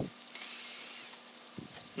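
Quiet room tone with faint steady hiss, broken by a faint click about a third of a second in and a brief low sound near the end.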